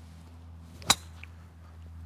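A golf driver striking a teed golf ball on a full swing: one sharp crack a little under a second in.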